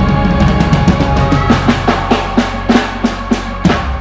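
Live band music: the drummer plays a fill on the kit, a run of drum hits that quickens over a held bass note and chord, closing with one strong hit near the end.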